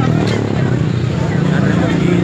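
Motorcycle engine running close by, a steady low hum, with people shouting and talking around it.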